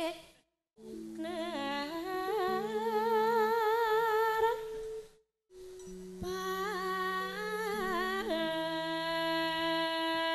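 A female sinden singing a slow, ornamented Javanese vocal line, with vibrato and curling melismas, over held low accompanying notes. The sound cuts out to silence twice, briefly: about half a second in and about five seconds in.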